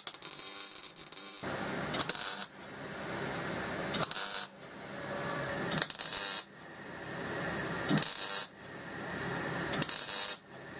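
MIG welder arc crackling through a series of short stitch welds on the steel gas-bottle body. The welds come about every two seconds, each growing louder and ending in a brief sharp hiss before cutting off.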